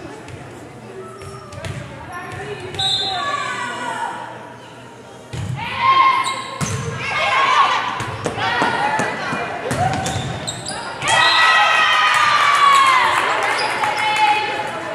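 A volleyball being struck and bouncing on a hardwood gym floor, with players' voices calling out and shouting, loudest in the last few seconds, all echoing in the large gym.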